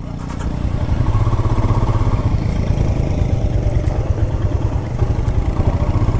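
Royal Enfield Himalayan's single-cylinder engine pulling away and running at low speed on a rough dirt trail; its exhaust note builds over the first second, then holds steady.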